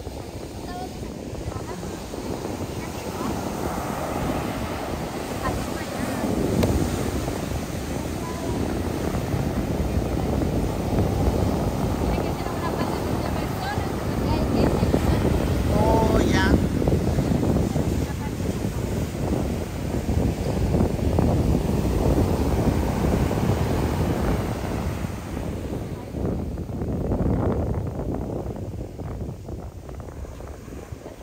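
Heavy ocean surf breaking and washing up the shore, mixed with wind buffeting the microphone; the noise swells and eases in loudness as the waves come in. The waves are big and rough.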